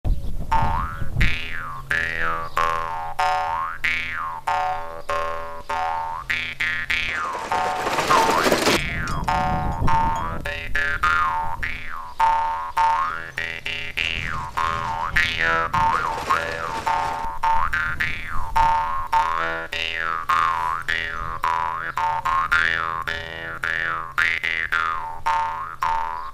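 Instrumental background music with a steady rhythm of twanging notes that sweep up and down in pitch over a repeating bass line. About seven seconds in, a swell of rushing noise rises and cuts off near the nine-second mark.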